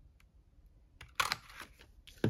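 Handheld lever circle punch pressed down and snapping through paper with one sharp mechanical clunk a little past a second in, followed by a few lighter clicks.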